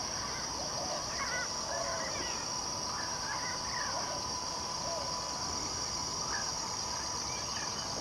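Insects droning steadily at a high pitch, with a thinner, lower steady tone beneath, and many short bird chirps and calls scattered throughout.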